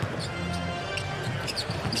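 Arena sound of a live NBA game during play: crowd noise with arena music playing, and a basketball being dribbled up the court on a hardwood floor.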